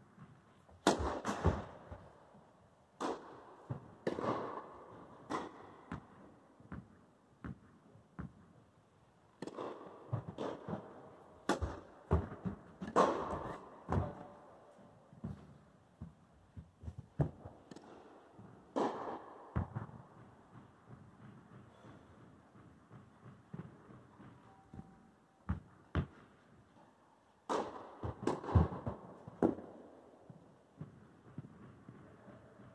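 Tennis balls struck by rackets and bouncing on the court in a reverberant indoor hall: sharp, echoing hits in several short rallies, the first starting with a serve about a second in.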